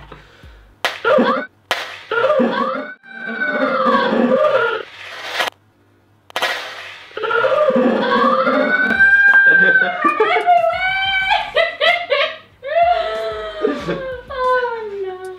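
Two men shrieking and laughing, with a few sharp knocks in the first seconds, as a raw egg is smashed on one man's forehead.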